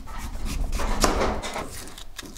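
Kitchen knife slicing through raw sweet potato onto a wooden cutting board, with a few short knocks of the blade on the board.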